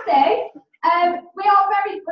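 A woman's voice amplified through a microphone, in three short phrases with brief pauses between them.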